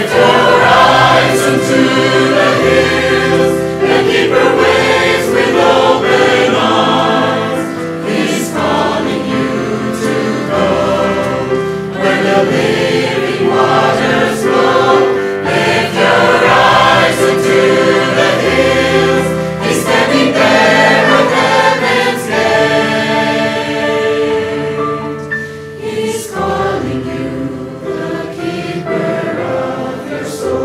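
Mixed choir singing a sacred song in parts, with long-held low bass notes beneath the voices. It grows a little softer over the last few seconds.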